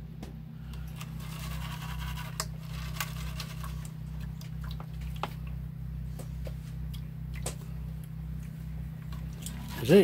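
Water sloshing and swirling in a plastic gold pan as it is panned in a tub, with scattered small clicks of grit and the pan knocking. A steady low hum runs underneath.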